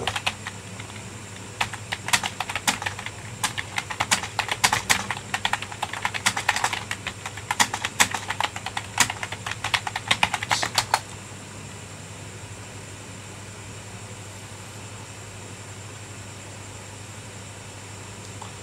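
Typing on a computer keyboard: a fast, irregular run of key clicks for about eleven seconds, which then stops, leaving only a faint steady hum.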